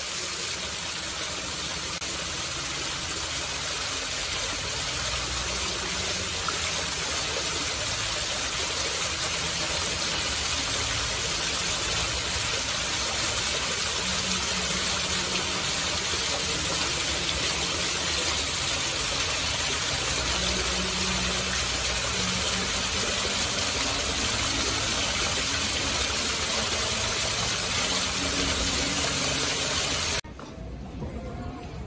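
Small rock waterfall in a garden water feature: water pouring and splashing over stones in a continuous rush, growing a little louder over the first few seconds and then holding steady.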